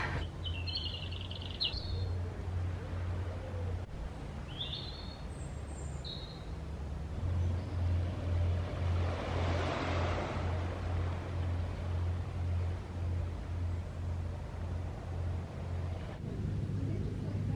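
Outdoor ambience: a few short, high bird chirps in the first six seconds over a low, pulsing drone of about two throbs a second. A broad rush of noise swells and fades around the middle.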